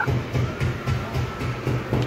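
Animated Halloween pay-phone prop playing its sound effect: a low, regular pulsing about five times a second, with a faint steady tone over it for part of the time.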